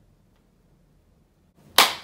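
Quiet room tone, then near the end a single loud, sharp hand clap with a short decay.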